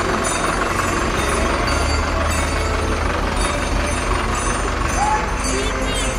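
A vehicle engine runs at slow parade pace with a steady low rumble, while people's voices chatter around it.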